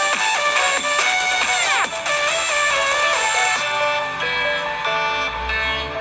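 Electronic dance music played through the Xiaomi Mi 8 SE's single mono bottom speaker as a speaker test. It has falling synth sweeps over a beat at first, then held chords. The reviewer finds the speaker loud and undistorted but with overdone bass, which leaves the sound a little muffled.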